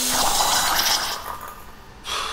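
Logo-animation sound effect: a rushing hiss like steam or poured liquid that fades away over the second half, with a brief low hum at the start.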